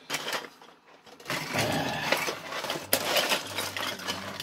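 Hands rummaging through a box of loose plastic miniature-kit parts and sprue, the pieces clattering against each other, starting about a second in, with one sharper click near the middle.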